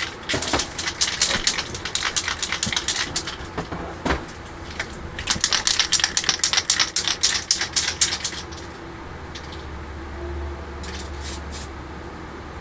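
Aerosol spray-paint can being shaken, its mixing ball rattling in rapid clicks, in two bouts of about three and a half seconds each with a short pause between, then a few separate clicks.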